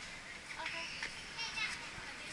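Faint high-pitched voices of people in a crowd, with two short calls about half a second and a second and a half in, over steady street background noise.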